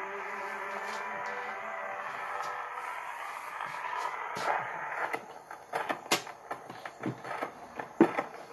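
Acoustic hand-cranked Victrola phonograph playing out the end of a 78 rpm shellac record: the singer's held last note with orchestra fades over the first four or five seconds. Then come irregular wooden clicks and knocks as the cabinet lid is lifted.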